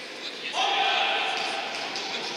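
A player's loud shout in an echoing sports hall during futsal play. It rises in pitch about half a second in and is held for over a second.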